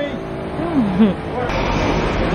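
Street traffic noise: a motor vehicle passing close by, its low rumble swelling about halfway through.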